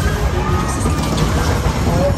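A whip fairground ride running, with a heavy low rumble of the cars and rig under way. Fairground music and people's voices are mixed over it.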